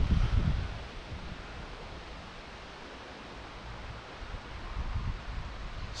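Wind gusting over the microphone, with a steady rushing hiss beneath. The gusts are louder in the first second and again near the end.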